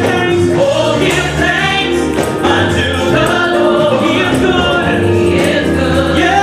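Gospel praise team singing, a male lead voice with a group of women's voices, over deep sustained accompaniment, with a tambourine shaking along.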